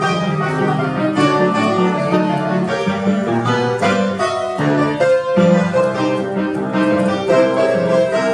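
Upright piano played solo, a continuous flow of chords and melody notes.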